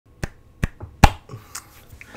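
Sharp snaps from a person's hands: three loud ones about half a second apart, the third the loudest, then a few fainter ones.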